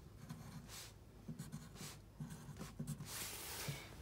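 Pencil writing on a paper worksheet: a run of faint, short scratching strokes.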